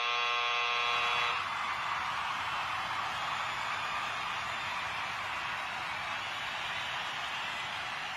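An electronic buzzer sounds as the countdown hits zero, one harsh tone lasting about a second and a half. Under it and after it comes a steady rushing noise.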